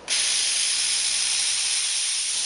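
Steady hiss of breath blown hard through a drinking straw onto a spinning top of stacked magnetic spheres, spinning it up.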